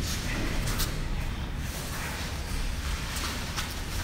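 Faint rustling and shuffling of two people grappling and stepping on gym mats, a few soft short scuffs over a steady low room rumble.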